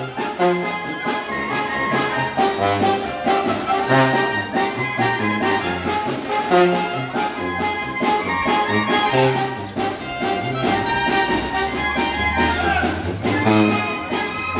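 Mexican village brass band (banda de viento) playing a dance tune live: horns carrying the melody over a moving bass line and steady drum beats.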